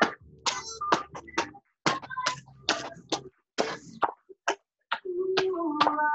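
Music with a percussive beat and a singing voice, cutting in and out abruptly as it comes through a video call's audio.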